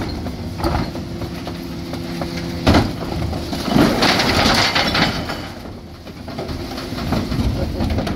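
Terberg bin lift on a Dennis Elite 6 refuse lorry raising two wheelie bins and tipping them into the rear hopper, over the lorry's steadily running engine. There is a sharp knock a little under three seconds in, then about a second of clattering as glass, tins and plastic containers tumble out of the bins.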